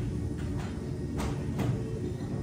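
Electric potter's wheel humming steadily, with three light clicks about half a second, a second and a second and a half in, as a metal tool touches the clay bowl.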